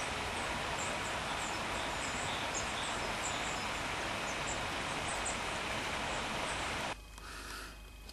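Steady outdoor background noise with faint, high bird chirps scattered through it; it cuts off suddenly about a second before the end, leaving quieter room tone.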